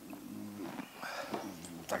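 A man's quiet, hesitant voice: a few short murmured sounds between phrases, too soft for the words to be made out.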